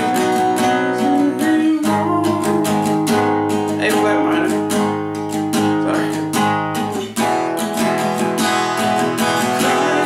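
Steel-string acoustic guitar strummed in a steady rhythm, chords of a song in B major played without a capo. The chord changes about two seconds in and again about seven seconds in.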